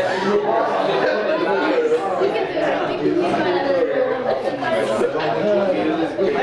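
Indistinct chatter of several voices talking at once in a classroom.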